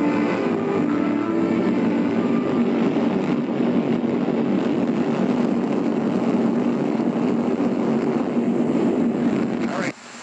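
Rocket launch: the engine's loud, steady rushing roar at liftoff, heard on an old newsreel film soundtrack. It cuts off suddenly near the end.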